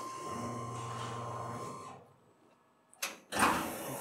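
Steady hum of the CNC milling machine running, with a thin high tone over it, cutting off abruptly about halfway. Near the end comes a sharp click and a brief sliding rush.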